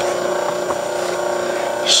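Steady hum with a few constant tones from the Rhodes metal shaper's temporary drive motor, running the ram slowly through its stroke.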